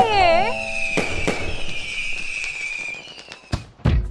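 Fireworks sound effect: a firework bursting with a crackling hiss and a long high whistle that slowly falls in pitch and fades over about three seconds, followed by a few sharp clicks near the end.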